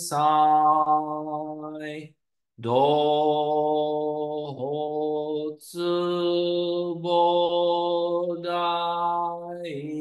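A man's voice chanting a Shin Buddhist sutra in Sino-Japanese, on long held syllables at a nearly steady pitch. There is a breath pause about two seconds in and a short break just after the middle. The pitch drops near the end.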